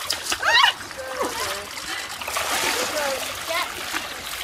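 Legs wading through knee-deep muddy stream water, splashing with each stride.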